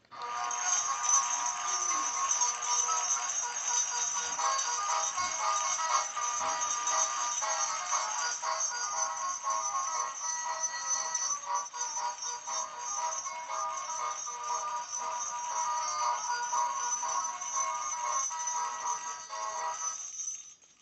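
Gemmy 2005 Ribbon Greeter animated door hanger playing its second built-in song, a sung tune, through its small fabric-covered button speaker. It starts as the button on the bow is pressed, sounds thin and tinny with no bass, and stops just before the end.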